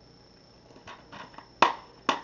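Plastic DVD case being handled: a few light clicks and rustles, then one sharp snap about one and a half seconds in as the case is shut.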